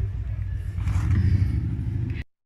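Street traffic: a low steady rumble of road vehicles, swelling about a second in as a car passes by.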